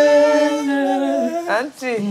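Unaccompanied voice humming or singing one long held note, broken off about a second and a half in by a short dip and quick upward slides in pitch.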